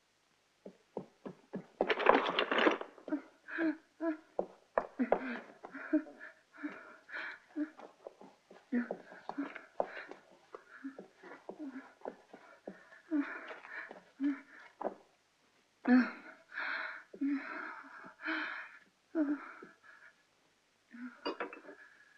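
A woman gasping and wheezing for breath in short, strained, voiced gasps one after another, as if choking, with a loud rasping gasp about two seconds in. A few quick footsteps come just before.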